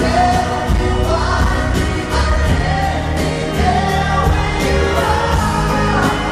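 Male pop vocal group singing a ballad in harmony into microphones, with an acoustic guitar accompanying, heard through the venue's PA.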